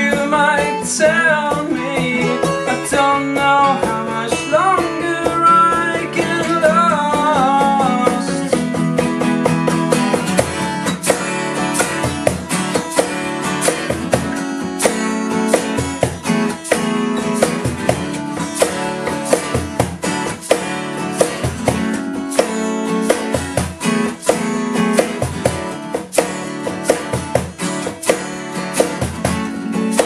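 Live acoustic band: two acoustic guitars strumming chords over a steady beat of shaker and cajón. A man sings for roughly the first eight seconds, then the guitars and percussion carry on without voice.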